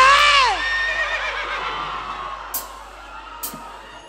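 A high voice through the PA whoops, sliding up, holding, then falling away about half a second in. Its echo dies down over the next couple of seconds, with a couple of faint clicks later on.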